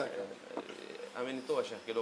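A man's voice speaking quietly and haltingly, in short phrases with pauses.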